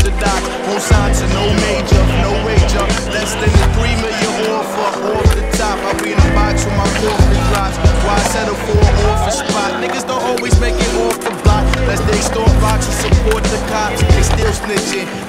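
A hip-hop track with a heavy, pulsing bass line, with skateboard wheels rolling and boards clacking on concrete mixed in.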